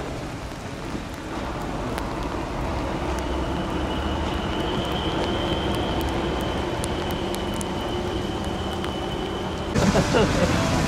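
Steady rain at a railway platform, a continuous even hiss, with a faint high whine that comes in about three seconds in and holds steady.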